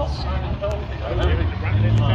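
Drift cars' engines running at the start line, a low rumble that swells louder about a second in, with a commentator's voice over it.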